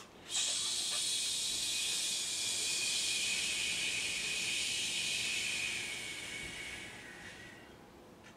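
A long, steady hissing exhalation, one continuous breath lasting about seven seconds that fades out near the end.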